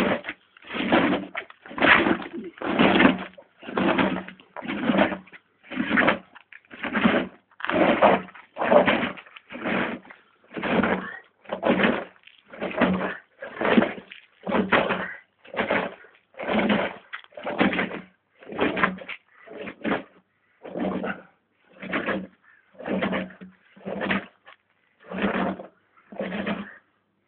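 A person breathing hard and fast under heavy exertion, each breath carrying a low voiced groan, in an even rhythm of about one breath a second.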